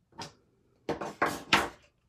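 Clear acrylic stamp block handled on a craft table: a light tap just after the start, then a cluster of knocks and scrapes about a second in as the block comes off the stamped cardstock and is set down.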